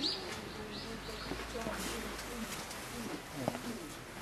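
Birds calling outdoors: a few short high chirps near the start, over lower calls and faint background voices.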